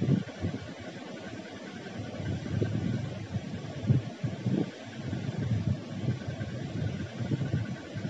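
A wooden spatula stirring lentils, dried red chillies and curry leaves as they dry-roast in a nonstick pan. An uneven low rumble swells and fades over a steady hiss.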